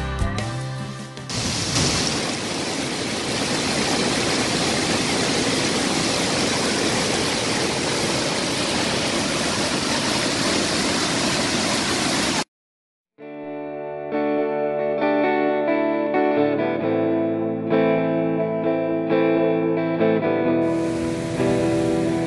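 Steady rush of a large waterfall, heard for most of the first half. It cuts off suddenly, and after a brief silence background music with guitar begins.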